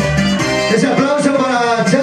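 Latin tropical dance music with a voice over it; the deep bass drops out under a second in, leaving the voice and the higher parts of the music.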